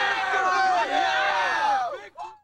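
A group of young men yelling and cheering together, many voices overlapping in a sustained shout that cuts off suddenly at the end.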